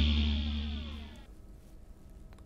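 Electronic news-show jingle ending with a deep bass tone and falling sweeps, fading out over about a second and a half into faint studio room tone.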